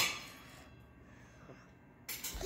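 A shouted "hey" cutting off right at the start, then near silence: quiet room tone with one faint tap about one and a half seconds in.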